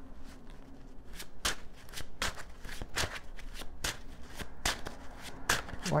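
A tarot deck being shuffled by hand: a run of quick, uneven card flicks and taps.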